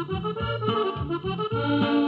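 Norteño-style band music in an instrumental break between sung verses: an accordion plays a melodic fill over steady, repeating bass notes.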